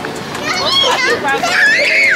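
Small children squealing and shrieking in play as they are chased, with one long high squeal that rises and falls near the end.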